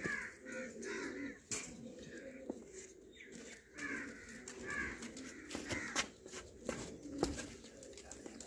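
Domestic pigeons cooing low in a wire cage, with repeated sharper bird calls over them and a few sharp clicks.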